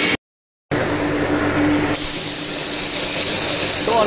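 Stainless steel colloid mill running steadily, a motor hum under grinding noise, with a loud hiss that comes in about two seconds in. The sound drops out for about half a second near the start.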